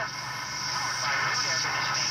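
A 1964 Arvin eight-transistor AM pocket radio playing a just-tuned medium-wave station through its small speaker: faint broadcast voice and music under a steady static hiss.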